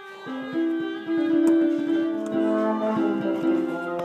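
Piano keys played in a short, simple ditty, a few held notes overlapping one another, starting a moment in.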